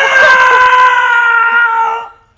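A man's loud, long drawn-out anguished yell of "No!", held for about two seconds with its pitch sagging slightly before it cuts off near the end.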